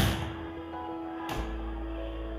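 Background music with steady held notes, broken by the slap of a volleyball being caught in hands: a sharp one right at the start and a softer one about a second and a half in.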